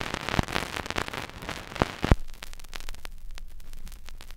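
Stylus in the lead-in groove of a vinyl LP: surface noise with crackle and several sharp pops. It is louder and rougher for about the first two seconds, ending in the loudest pop, then settles to faint crackle over a low rumble before the music starts.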